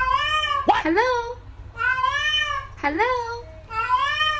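Domestic cat meowing loudly and repeatedly: a run of long, drawn-out meows, each rising then falling in pitch, with a short, sharp upward call about a second in.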